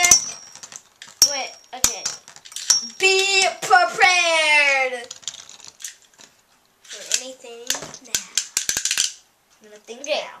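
Metal Beyblade spinning tops knocking together in a plastic stadium, giving a few sharp clicks. A child's wordless voice slides down in pitch in the middle. Near the end comes a quick rattle of clicks as the top clatters.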